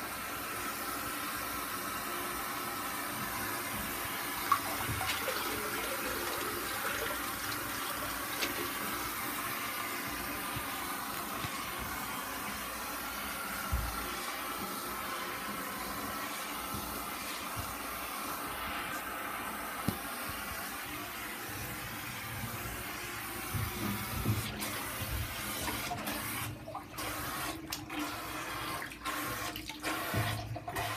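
Water running and splashing steadily in a filled bathtub. In the last few seconds there is rubbing and knocking as the phone is handled.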